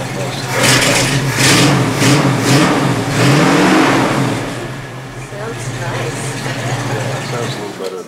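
1967 Sunbeam Tiger Mk II's Ford 289 V8 running in a room: revved several times in the first few seconds, settling back to idle, then switched off just before the end.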